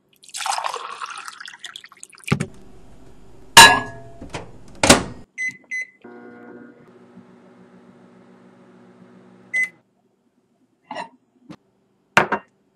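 Kitchen sounds around a microwave oven: water poured into a cup, a few loud knocks and clunks, short keypad beeps, then the microwave oven humming steadily for about three and a half seconds before it cuts off with a beep.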